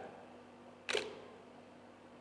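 A camera shutter firing once, a sharp click about a second in.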